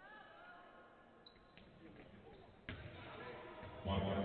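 A basketball striking hard in a large hall: one sharp bang about two and a half seconds in, over faint voices.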